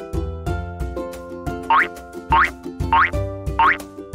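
Bouncy children's background music with a steady beat, joined in the second half by four short rising whistle-like sound effects, about two-thirds of a second apart.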